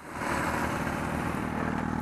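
A motorcycle engine running steadily close by, coming in suddenly and holding an even, rapid pulsing.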